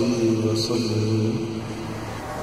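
Channel intro jingle: sustained, chant-like vocal tones held as a drone, fading out near the end.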